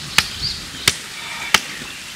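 Three sharp slaps of a hand on the bottom of an upturned plastic makgeolli bottle, about two-thirds of a second apart, knocking the settled rice sediment loose before the bottle is opened.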